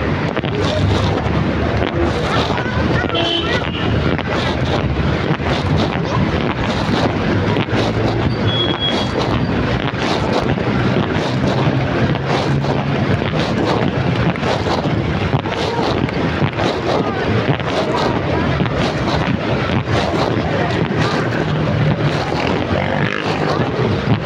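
City street traffic, vehicle engines running, heard through steady wind buffeting on a phone microphone.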